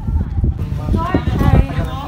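People talking, with irregular low thumps underneath.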